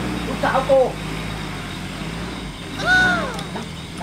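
A few spoken words, then a brief falling vocal call, over a steady low hum.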